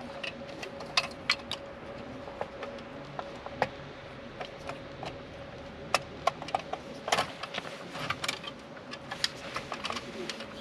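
Irregular clicks, taps and rustles from a fabric privacy shower curtain being hung and fastened along the top of a vehicle's side, with a faint steady tone underneath.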